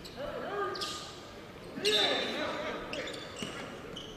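Faint basketball gym sound during a stoppage in play: a ball bouncing on the court and distant voices of players and crowd, with a few short high squeaks about two seconds in.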